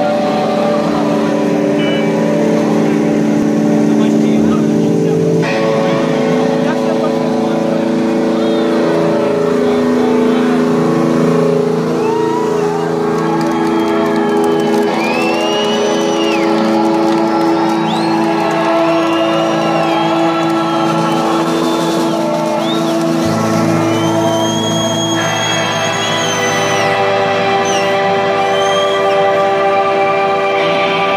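Amplified street band playing a slow droning intro: long held chords that shift a few times, with high sliding tones rising and falling over them in the middle stretch.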